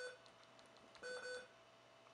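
Button-press beep from a Soundstream VR-931NB touchscreen car stereo receiver as its sub-volume arrow is tapped. One short, faint electronic beep sounds about a second in, and the tail of the previous beep is heard at the very start.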